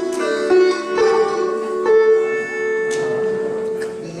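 Sitar played solo in the singing style (gayaki ang): a few plucked notes joined by slides in pitch, then one long held note about halfway through that rings on and fades near the end.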